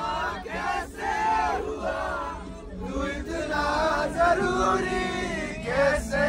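A group of schoolchildren singing and shouting together in a loud, chant-like chorus, with a steady low rumble of the moving bus underneath.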